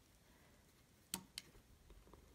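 Near silence: room tone, with two faint sharp clicks a little over a second in.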